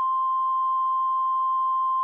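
Videotape line-up tone: the standard 1 kHz reference tone recorded with colour bars, one steady, unwavering pitch held at a loud level.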